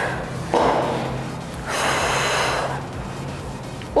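A woman breathing hard from exertion between sets: a breath about half a second in, then a longer, louder breath around two seconds in, over background music.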